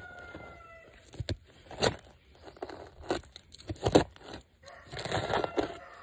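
Hand trowel digging into loose, mulchy soil: a series of short crunching scrapes as dirt is cut and scooped out of a planting hole. A rooster's crow trails off in the background about a second in.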